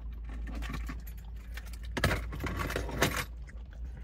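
A light jangling, clattery rustle in two short bursts about two and three seconds in, over a steady low hum inside a car.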